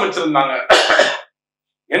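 A man speaking in Tamil, with a rough, breathy sound near the end of his phrase, then about half a second of silence before he speaks again.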